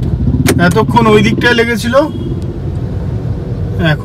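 A person's voice talking for about the first two seconds over the steady low hum of a car, heard from inside the cabin in traffic; after that the hum carries on alone.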